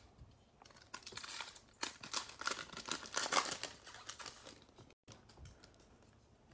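A baseball card pack's wrapper being torn open and crinkled, a run of crackling from about a second in until nearly five seconds.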